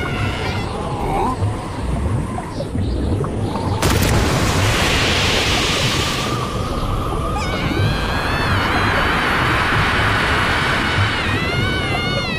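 Cartoon sound effects of a heavy surge of rushing water, with a sudden burst of spray about four seconds in. From about halfway through, a young woman's long, high scream rises over the water.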